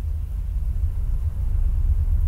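A low, steady rumble that builds slightly louder.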